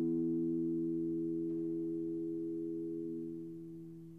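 Pipe organ holding a soft chord of a few pure, steady tones that grows gradually fainter and dies away near the end.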